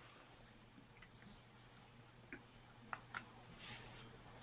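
Near silence with faint room hum and a few faint short clicks between about two and three seconds in.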